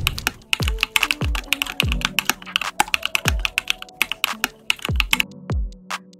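Computer keyboard typing sound effect, a quick run of key clicks, over background music with deep kick-drum hits. The typing stops about five seconds in, and a few last clicks follow near the end.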